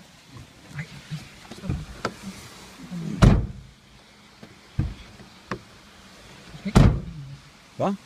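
A series of sharp thumps and knocks inside a car, the two loudest about three seconds in and near the seventh second, with faint muffled voices between them.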